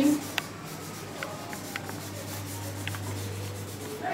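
Marker pen writing on chart paper pinned to a board: soft rubbing strokes with a few small ticks, over a steady low hum.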